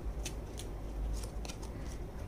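Oracle cards being handled as one is drawn from the deck: a quick series of short, light rustles and snaps of card stock.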